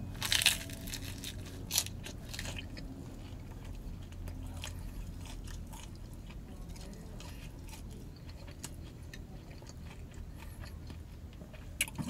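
A person biting into and chewing a slice of Detroit-style pizza with a super crispy crust: a few sharp crunches in the first couple of seconds, then quieter chewing.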